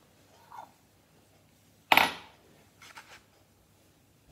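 An egg knocked against the rim of a glass mixing bowl to crack it: one sharp clink about two seconds in, then a few faint taps near the end.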